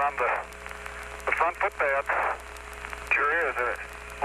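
An Apollo astronaut speaking over the air-to-ground radio link: narrow, tinny speech in three short phrases over a steady hiss and hum.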